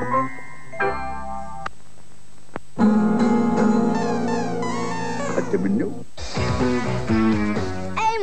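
Television commercial music. A short held chord closes one jingle, and after a brief dip a busy up-tempo tune with guitar starts. Near the end it changes to a sung jingle over music.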